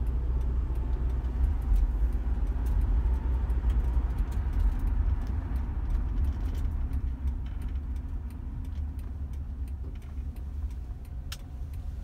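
A car's engine and tyres rumble low inside the cabin as it is driven, louder for the first half and easing off after about seven seconds. A single sharp click sounds near the end.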